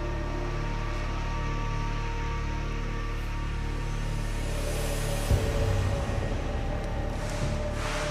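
Tense dramatic background music: sustained low drones and held tones, with a low hit about five seconds in, after which the texture changes.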